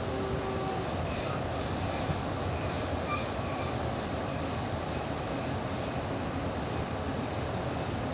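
Interior running noise of an H set (OSCar) double-deck electric train car: a steady rumble and hiss of wheels on rails, with a few faint brief tones.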